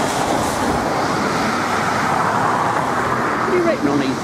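A box van passing close by on a wet road: loud, steady tyre hiss and engine noise. A voice starts speaking near the end.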